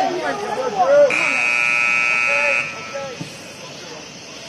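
A buzzer sounds once, about a second in: a steady, high, single tone lasting about a second and a half, then cutting off sharply. Players' shouts come just before it.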